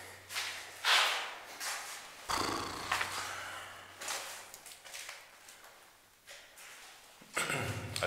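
Several soft, breathy rushes of noise close to the microphone, a few in the first half and fainter later, over a faint steady low hum.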